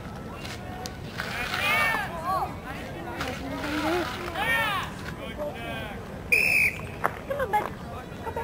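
Spectators and players shouting across a lacrosse field, with one short, steady referee's whistle blast about six seconds in, the loudest sound here, followed by a few sharp clacks.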